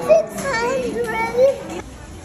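A young child's high-pitched voice, vocalizing with quick rises and falls in pitch but no clear words, stopping near the end.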